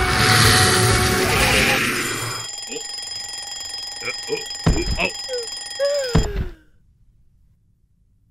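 A loud, harsh yell, then a cartoon alarm clock ringing steadily for about four seconds with short squeaky cartoon voices over it. The ringing cuts off suddenly, leaving near silence.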